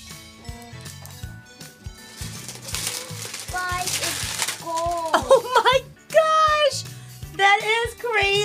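Background music plays while a plastic wrapper crinkles for a couple of seconds, about three seconds in, as it is pulled off a large toy capsule.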